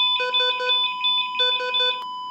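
Telephone ringing as a call goes out: an electronic trilling ring in short bursts, about ten pulses a second, with brief gaps, over a steady high tone.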